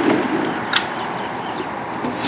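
Steady noise of vehicles and work machinery from the street and building site, coming in through an open window, with one sharp click a little under a second in.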